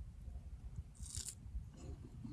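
A bite into a small piece of food being fed by hand, with one short, crisp crunch about a second in, over a faint low rumble.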